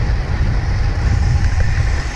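Wind buffeting the microphone of a POV camera on a road bike moving at about 33 km/h: a loud, steady low rumble with a rushing hiss over it.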